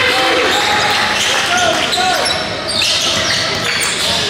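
Basketball game in a gym: a ball bouncing on the hardwood court amid the voices of players and spectators.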